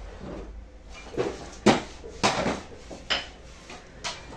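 A few sharp clattering knocks of hard objects striking each other, four in all, the loudest about one and a half seconds in, over a low steady hum.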